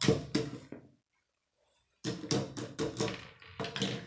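Plastic Lego pieces tapping and clattering against a wooden tabletop as they are handled. There are a few knocks, then about a second of dead silence, then a quicker run of about four knocks a second.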